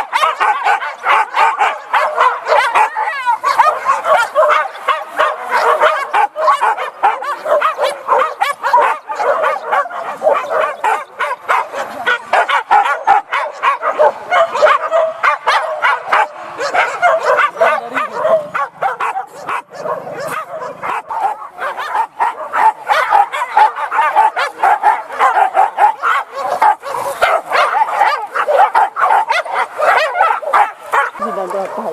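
A pack of boar-hunting dogs barking and yelping without pause, many voices overlapping.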